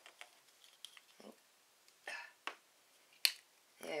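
A few small clicks and cracks as a plastic toy capsule is pried out of a chocolate egg. The stuck capsule pops free with a sharp click about three seconds in.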